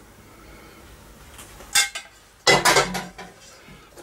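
A metal spoon clinking against ceramic dishes: one sharp clink a little before halfway, then a louder clatter of a few knocks about two and a half seconds in.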